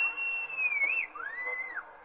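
A high whistle: one tone slides up and holds for about a second, then a second, shorter whistle rises and falls.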